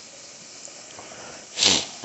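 Tap water running from a kitchen faucet into a plastic water bottle, a steady even hiss. A brief louder hiss comes near the end.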